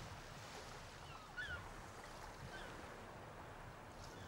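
Faint ambience of calm open water: a soft, even hiss with a few faint short chirps, the clearest about a second and a half in.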